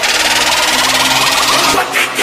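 Electronic intro sound effect: a loud, dense, rapid buzzing rattle that holds steady, part of a build-up into dubstep intro music.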